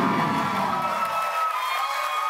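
Title-card music sting of held, sustained synth tones, over studio audience cheering that dies away about a second and a half in.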